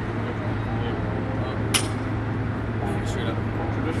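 Loaded barbell lifted off the ground in a deadlift, with one sharp metallic clink of the bar and plates about two seconds in. Under it runs a steady low hum and background noise.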